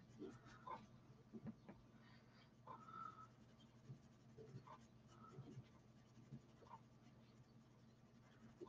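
Faint, irregular rubbing and scuffing of a flat square PanPastel sponge applicator stroked across smooth hot-press watercolour paper, in short strokes with a few small squeaks.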